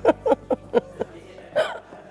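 A woman laughing in short bursts, a few quick chuckles about a quarter second apart, then a longer one near the end.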